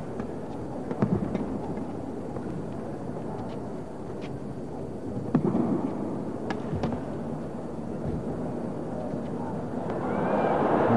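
Badminton rackets striking a shuttlecock during a rally: sharp, separate cracks every second or so. Under them runs the steady murmur of an indoor arena crowd, which swells briefly about a second in and again about five seconds in.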